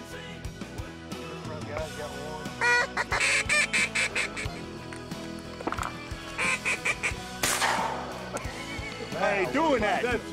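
Quick runs of nasal duck calls, one bout about three seconds in and a shorter one about six and a half seconds in, over steady background music. A short sudden noisy burst follows about seven and a half seconds in.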